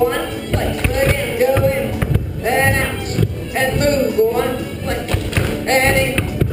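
Live folk dance band with fiddles and accordions playing a contra dance tune, with the thumps of many dancers' feet on a wooden hall floor.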